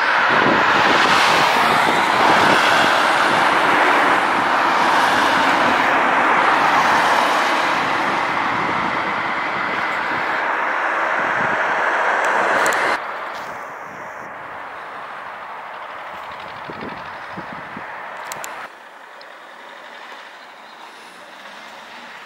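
Road traffic noise from a vehicle going past close by on the road, loud for the first half. It then drops sharply twice to a fainter traffic hum.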